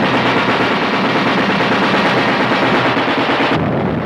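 Battle sound effects on an old film soundtrack: sustained rapid machine-gun fire mixed with other gunfire, its high end dropping away about three and a half seconds in.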